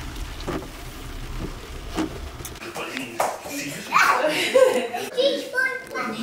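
Low road rumble inside a car's cabin while driving in the rain, with a few sharp ticks, cut off abruptly about two and a half seconds in. Then a young child's voice in a small room.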